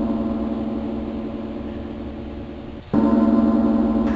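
A gong ringing and slowly fading after a strike, then struck again near the three-second mark and ringing loud once more.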